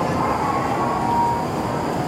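Steady hum from E5 and E7 series shinkansen trains standing at the platform, with a thin whine from about a third of a second in to a second and a half.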